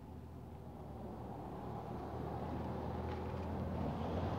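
Low engine rumble of a vehicle growing steadily louder as it approaches.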